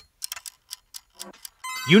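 Countdown-timer ticking sound effect, sharp light ticks about four a second as the quiz's answer timer runs down. Near the end a steady electronic tone comes in as the time runs out.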